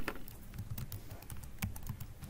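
Typing on a computer keyboard: a run of irregular keystrokes entering a word.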